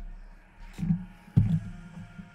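Two dull knocks of sealed cardboard hobby boxes being handled and set down on a tabletop, the second, about a second and a half in, sharper and louder.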